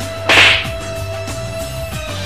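A single loud slap, a hand striking a person's head, about a quarter second in, heard over background music with a held note.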